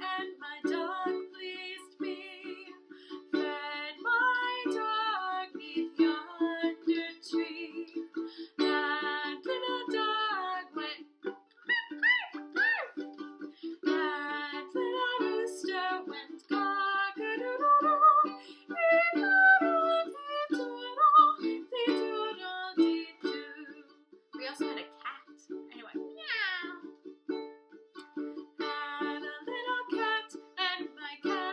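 A woman singing a children's story song while strumming chords on a Mahalo ukulele. Her voice slides in pitch partway through and makes a sharp rising swoop near the end.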